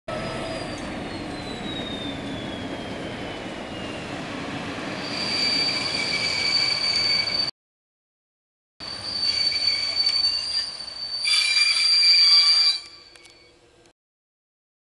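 PKP SM42 diesel locomotive passing with its engine running, then its passenger coaches rolling by with a steady high-pitched wheel squeal. The sound breaks off completely for about a second midway, comes back, and dies away near the end.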